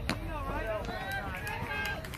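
Men's voices calling and talking around a softball field, with a short sharp knock just at the start.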